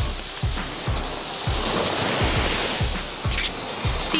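Small waves washing onto a sandy shore, with wind buffeting the microphone in low, irregular thumps.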